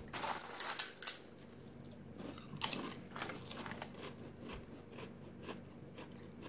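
Potato chips being bitten and chewed close to the microphone: a string of irregular crunches, loudest around the first second and again about three seconds in.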